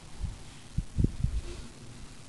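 A few soft, low thumps, about four in two seconds, over a quiet background.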